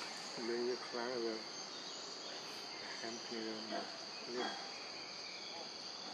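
Steady high buzzing of forest insects, with two short, wavering, voice-like calls, about half a second in and about three seconds in.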